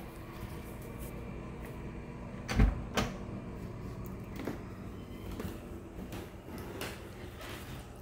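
Interior wooden door being handled, with two sharp knocks about half a second apart a few seconds in, over faint handling rustle.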